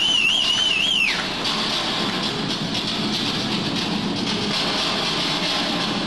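Arena crowd applauding, a steady patter of many hands, with a high wavering whistle-like note over it for about the first second.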